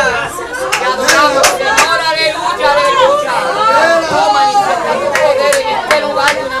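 A man's voice over an amplified microphone, mixed with other voices from the congregation. Nothing in it is clear enough to make out as words.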